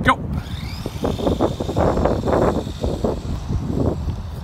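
Electric motors of remote-control cars whining up in pitch as the cars take off, then running on, with rough scuffing and rustling noises through the rest.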